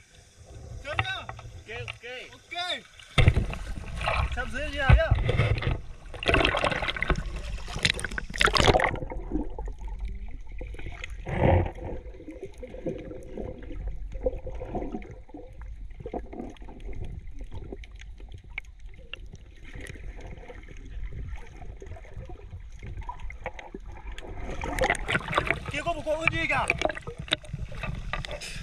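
Seawater churning and splashing around a waterproofed GoPro action camera as it plunges into shallow sea, then a long stretch of dull, muffled underwater gurgling with the highs cut off while it is submerged, and splashing again as it breaks the surface near the end.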